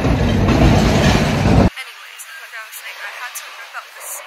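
Wind buffeting the phone's microphone, a loud low rumble that cuts off abruptly under two seconds in. After it, much quieter street sound with faint voices.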